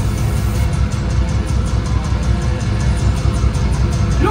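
Death metal band playing live through a loud PA: heavily distorted, low-tuned guitars and bass over fast drumming, with no vocals.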